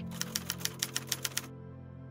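Typewriter key-click sound effect: a quick, even run of about a dozen clicks that stops about one and a half seconds in, over steady background music.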